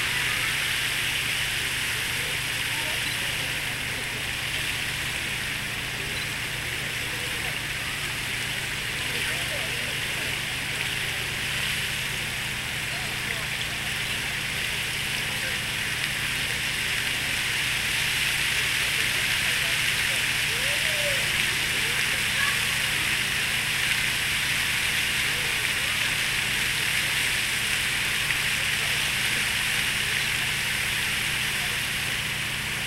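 Large park fountain's water jets splashing steadily into the basin, a dense even hiss of falling water that grows a little louder past the middle, with a faint murmur of voices in the background.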